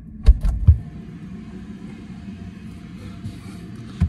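Close handling noise: three or four sharp knocks and clunks in the first second, then a steady low rumble while the camera is carried about as the burst cans are fetched from the motorhome's fridge.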